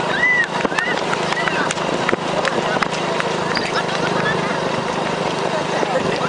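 A crowd of runners' footsteps patter on asphalt over the steady hum of a motorbike engine, with voices and high chirping calls on top.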